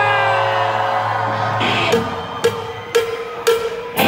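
Live rock band: a held electric guitar note slides down in pitch and fades, then four sharp percussion hits about two a second count in the song, with the full band coming in just at the end.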